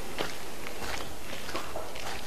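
Footsteps of a person walking on a garden path, several steps in a row over a light background hiss.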